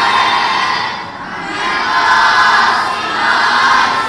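A large group of boys chanting an Urdu Islamic tarana (anthem) loudly in unison, in a reverberant hall. One phrase ends about a second in, and the next swells up and holds.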